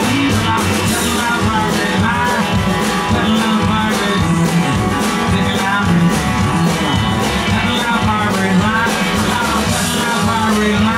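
Country-rock band playing live with a steady beat: drums, upright bass, electric guitars, fiddle and pedal steel, with a bending melodic line over them.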